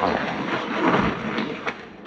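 A disposable nitrile glove being pulled onto a hand, rubbery stretching and rustling with a few sharp snaps, fading toward the end.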